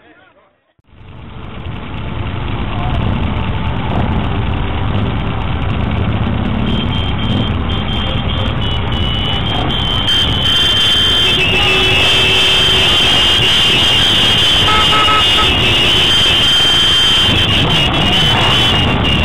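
A large pack of motorcycles running together, a dense low engine noise that rises in about a second in and stays loud, with horns sounding as steady high tones in the second half.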